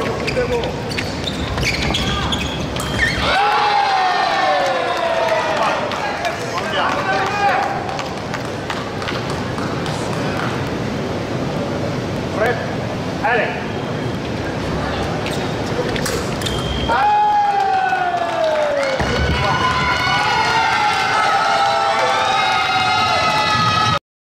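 Fencing bout with footwork on the piste. Loud shouts with falling pitch come about three seconds in and again around seventeen seconds, as touches are scored, and from about nineteen seconds a burst of many voices carries on to the end.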